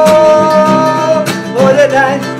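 Acoustic guitars strumming and picking under one long, steady sung note that ends a little over a second in, followed by a brief wavering melodic phrase.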